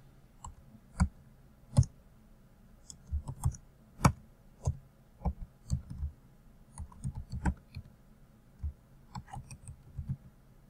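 Computer keyboard being typed on: irregular key clicks, some coming in short quick runs with pauses between.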